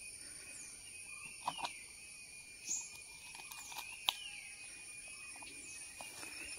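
Faint steady high-pitched drone of insects such as crickets in the undergrowth, with a few soft clicks, the sharpest about four seconds in.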